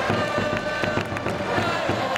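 A Japanese pro baseball outfield cheering section: trumpets playing a fight-song melody over a fast, steady beat of drums and clapping, with the crowd singing and shouting along.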